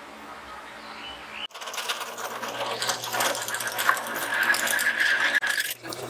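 Drill press boring through a steel disc, about a second and a half in: a dense metal-cutting noise over the machine's running, with a high squeal from the bit that grows strongest near the end and cuts off suddenly.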